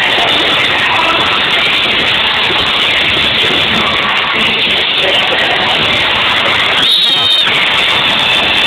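Live pop-rock band playing in an arena over a screaming crowd, heard as a dense, steady wall of sound from the audience. A brief high-pitched squeal stands out near the end.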